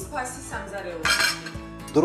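A metal spoon clinking and scraping against a frying pan, in one short clatter about a second in, over light background music.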